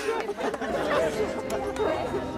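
Several people talking over one another in lively chatter.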